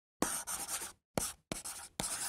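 Pen nib scratching on paper in three quick strokes, a writing sound effect; the first stroke is the longest, the second short, the third runs on into the next.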